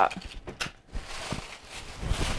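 Handling of packaged jewelry being pulled out of a bag: soft rustling with a few scattered light clicks and knocks.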